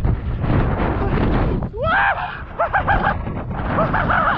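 Skis running through deep powder snow with wind on the camera microphone, a steady rough rumble. About two seconds in, the skier gives a rising whoop, followed by a few short hoots near the end.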